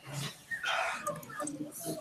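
Faint, indistinct voices coming over a video call, with no words clear enough to make out.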